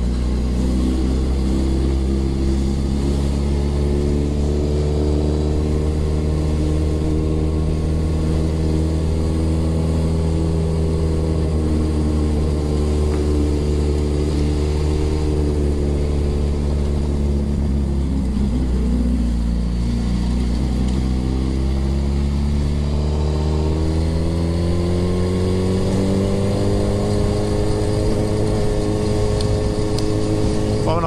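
Suzuki Hayabusa's inline-four engine running at low revs, the motorcycle ridden slowly through town. The engine note holds steady, sags briefly about two-thirds of the way in, then climbs gradually over the last several seconds as the revs rise.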